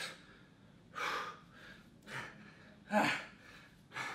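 A man breathing hard from the exertion of bodyweight squats: three short, hard breaths about a second apart.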